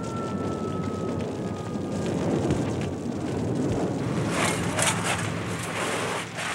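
A house fire burning with a steady roar, while a fire-engine siren's tone slides down and fades in the first two seconds. Sharp crackles break in from about four seconds on.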